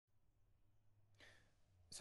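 Near silence with a faint low hum, then, a little over a second in, a man's soft in-breath just before he starts speaking.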